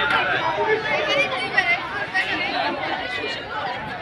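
Crowd of spectators chattering: many voices talking over one another at once, with no single voice standing out.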